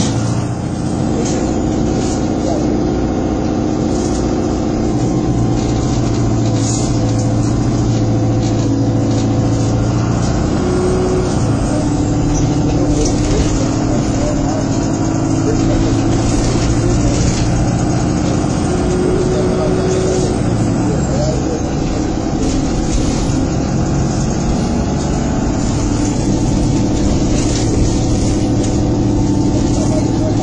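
Interior sound of Stagecoach Manchester bus 27624 under way: a steady engine hum and road noise heard inside the passenger saloon. The engine note shifts up and down a little as the bus changes speed, with scattered light knocks from the body.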